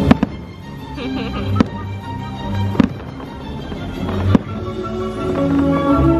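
Aerial firework shells bursting in sharp bangs: two close together at the very start, the loudest, then three more a little over a second apart. They sound over the show's soundtrack music.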